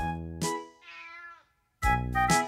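A faint, short cat meow, a single call with a bending pitch about half a second in, heard in a break in the backing music. The music comes back in near the end.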